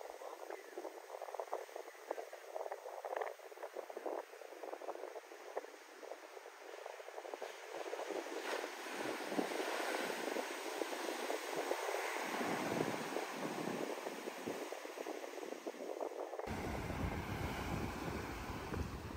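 Ocean shore break: waves breaking and whitewater washing up the sand, getting louder about halfway through as a big wave crashes. Near the end the sound changes suddenly and a low wind rumble on the microphone joins the surf.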